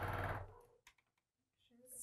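Electric sewing machine stitching at a steady speed, then stopping about half a second in.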